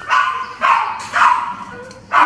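Small dog barking three times in quick succession.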